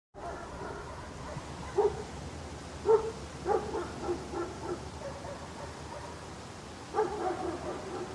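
A dog barking in separate outbursts over a steady outdoor background hiss. There are sharp single barks about two and three seconds in, then a quick run of softer barks, and another cluster near the end.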